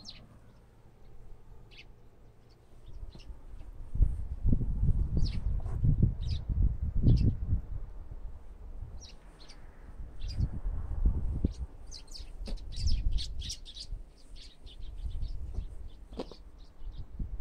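Small wild birds chirping in short, scattered calls that come thickest near the end. Low rumbling gusts of wind on the microphone run under them from about four seconds in and are the loudest thing heard.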